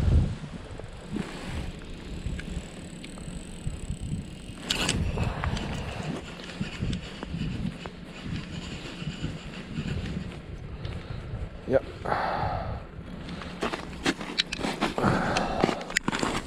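Gusty wind buffeting the microphone on open lake ice: a steady low rumble and flutter, with a couple of short knocks.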